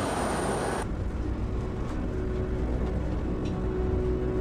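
Airport-apron background noise with a thin high steady whine cuts off about a second in. A low rumble carries on, and a held low drone of background music comes in under it.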